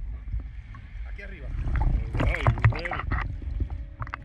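Low rumble of water sloshing and wind on a camera held at the sea surface, with a voice speaking briefly about two seconds in.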